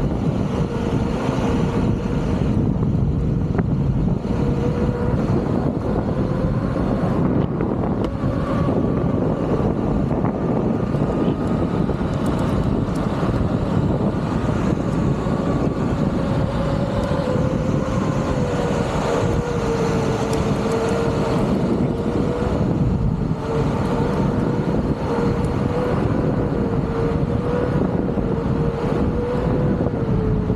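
Wind rushing over the microphone during a ride on a Begode Master electric unicycle, with a steady mid-pitched whine, likely from its hub motor, that wavers slightly in pitch in the second half.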